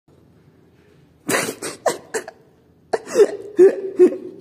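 Rubber gas mask squawking as air is forced through it in short, sputtering bursts: four quick ones, a pause, then three more.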